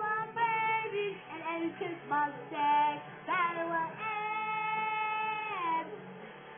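A high-pitched singing voice with music, a song playing from a television. The melody glides between notes, then holds one long note in the second half.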